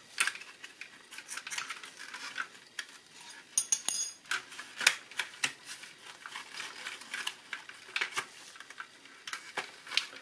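Irregular light clicks and taps of plastic as a thin dial underlay is worked out from under the needles of a car instrument cluster, with a brief crinkle of the sheet a little before halfway.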